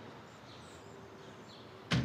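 Quiet outdoor background noise with a faint steady hum through the middle, then a short sharp click just before the end.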